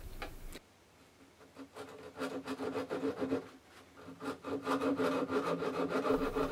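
A small guitar maker's fret saw cutting into the lacquered side of an acoustic guitar with short, quick strokes from the tip of the blade. The sawing starts about a second and a half in, with a brief pause partway through.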